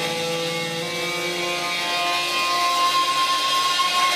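Live rock band letting the final chord of a song ring out, electric guitars sustaining, with one high note held steady from about a second in.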